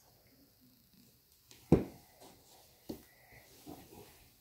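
Handling sounds in a quiet room: one sharp thump a little before halfway, a softer knock about a second later, and faint small knocks near the end.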